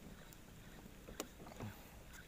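Faint handling noises of fishing tackle in a small boat: a sharp click a little over a second in, then a soft low knock, over a quiet background.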